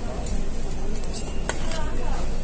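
Steady restaurant chatter and low room hum, with one sharp clink of metal cutlery on a ceramic plate about one and a half seconds in.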